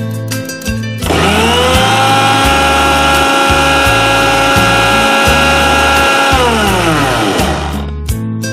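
Electric mixer grinder grinding spinach with milk in its stainless steel jar. The motor starts about a second in, rises to a steady whine, and is switched off after about five seconds, winding down with a falling pitch.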